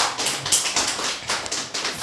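Brief audience applause: a dense, irregular patter of hand claps.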